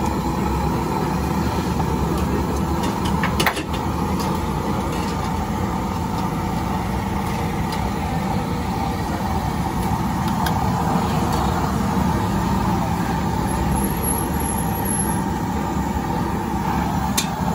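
Steady roadside street noise with traffic running on the road, and one sharp knock about three and a half seconds in.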